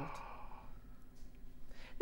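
A soft sigh, a breath let out right after speaking and fading over about half a second, then near quiet with a faint breath in just before speech resumes.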